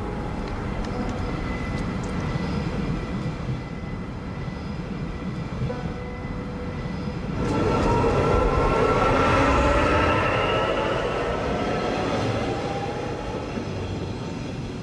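Passenger train at a station platform: a steady low rumble, then from about seven seconds in a louder stretch of whining tones that climb in pitch before easing off.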